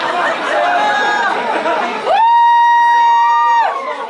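Crowd chatter in a small rock club between songs. About two seconds in, a loud, high, steady note is held for about a second and a half, and a second, slightly higher note joins it near the end.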